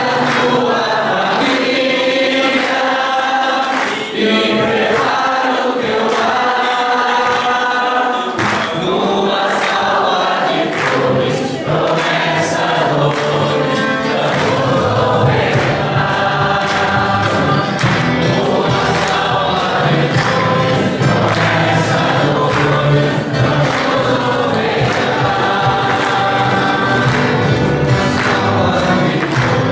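Voices singing a hymn together in a church, steady and continuous, with a fuller low part joining about eight seconds in.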